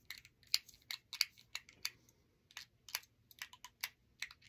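Repeated small plastic clicks of a handheld remote's button being pressed over and over, irregularly and sometimes in quick pairs; the remote is not responding, which she puts down to a dying battery.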